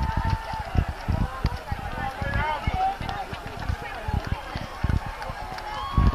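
Footsteps of many marathon runners on the road, a dense patter of irregular low thuds, with spectators' voices and shouts from the crowd around.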